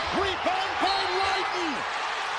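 Televised college basketball game audio: a commentator's voice over steady arena crowd noise.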